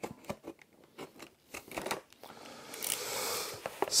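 A hand-held blade cutting into a cardboard toy box: a few small clicks and scrapes at first, then a longer scraping cut from about halfway, ending in a short sharp rasp.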